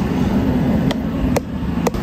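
A steady low rumble, with three short sharp knocks: about a second in, again a moment later, and near the end.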